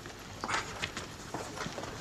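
A few light, uneven footsteps on a hard floor, with no steady rhythm.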